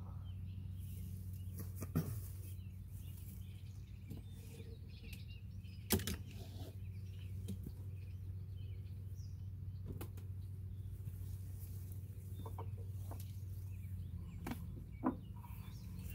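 A beehive being opened by hand: a few sharp knocks and clacks as a concrete block weight is lifted off, a strap is undone and the wooden hive cover is raised. The loudest knocks come about two and six seconds in, with a quicker run of small clicks near the end, over a steady low hum.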